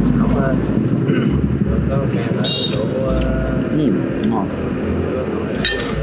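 Steady background noise of an open-air street-food stall, with voices and a brief murmur from the eater, and a short sharp noise near the end.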